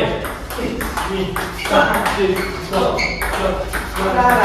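Table tennis rally: the celluloid-type ball clicking off rubber-faced bats and bouncing on the table, a hit or bounce every fraction of a second at an uneven pace, with players' voices over it.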